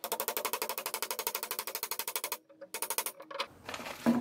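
Hammer tapping on a steel axle yoke held in a bench vise, driving a Spicer U-joint bearing cap into a chromoly axle shaft. The taps come in a very rapid, even run for about two seconds, stop briefly, then a few more follow before they stop.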